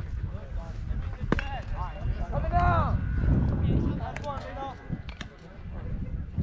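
Voices of people chatting at a distance, over a steady low rumble, with one sharp knock about a second and a half in.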